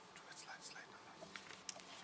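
Near silence: quiet room tone with a faint whispered or murmured voice and a single soft click near the end.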